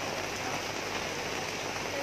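Steady rain falling, an even hiss without breaks.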